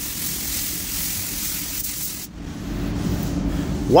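Compressed-air paint spray gun hissing as it sprays paint onto a car's panel, cutting off a little over two seconds in. A low steady hum carries on after it stops.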